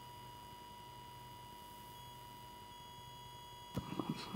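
Quiet pause on a video-call audio feed: a faint steady electronic tone and low hum, with one sharp click shortly before the end.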